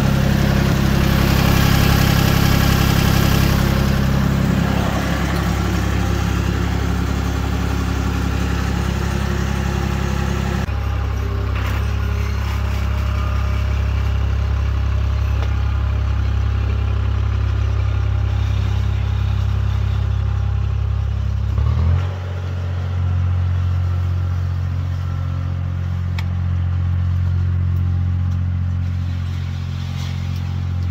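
Vermeer mini skid steer engine running steadily under load, with some clatter. Its note changes abruptly about a third of the way in and again past two-thirds.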